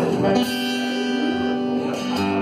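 Acoustic-electric guitar: a chord strummed about half a second in and left ringing out, in a country song played live.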